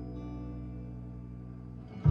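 Quiet opening of a recorded song played back through Western Electric L8 speakers: a held, steady chord with guitar in it. Much louder music comes in at the very end.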